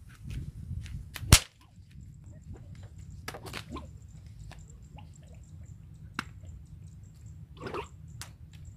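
A homemade whip cracking: one sharp, loud crack a little over a second in, followed by a few fainter snaps.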